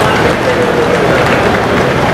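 Audience applauding, a steady continuous clapping, with faint voices underneath.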